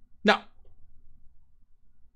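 Speech only: a man says a single short 'No,' followed by quiet room tone.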